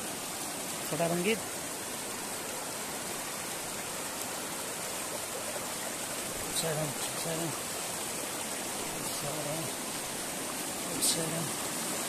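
Shallow rocky mountain stream rushing and splashing over boulders and stones, a steady rush of water.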